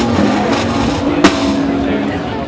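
A snare drum struck once with a sharp crack about a second in, over crowd voices and music.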